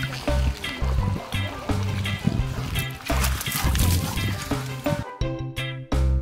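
Background music with a steady, repeating bass line. Under it, outdoor lakeshore sound with splashing water runs until it cuts out about five seconds in, leaving only the music.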